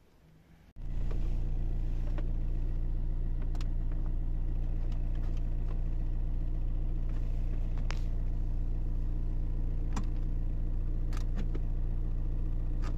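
Car engine idling steadily, heard from inside the cabin, coming in abruptly about a second in. Several sharp clicks from the radio's buttons and knob are heard over it.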